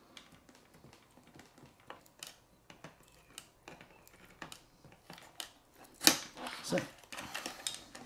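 Faint, irregular small clicks and creaks of hard plastic as a hand-held drill is worked through a toy's plastic body and lid, with a sharper click about six seconds in.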